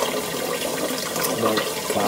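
Steady rush of running water in a small, hard-walled room.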